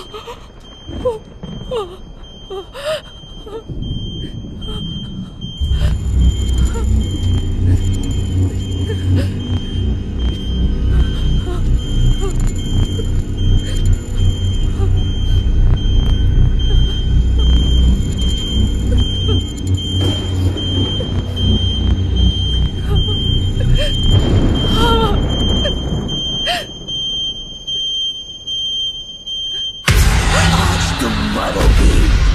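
Film soundtrack: a loud low rumbling drone, with a thin steady high tone above it, comes in suddenly about six seconds in and eases off near the end. Scattered short sounds and brief voice-like cries come before it, and a few more come as it fades.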